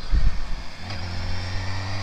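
BMW K1600GT's inline-six engine running steadily under light throttle while riding, under a steady rush of wind and road noise.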